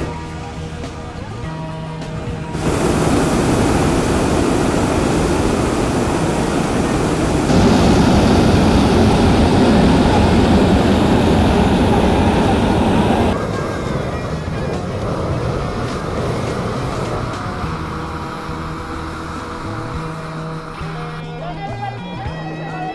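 Hot-air balloon propane burner firing, a loud steady rushing noise that starts a few seconds in, gets louder about halfway through and cuts off suddenly after about ten seconds. Background music plays under it and carries on alone afterwards.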